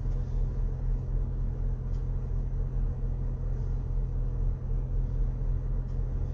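Steady low rumble of a car, heard from inside its cabin.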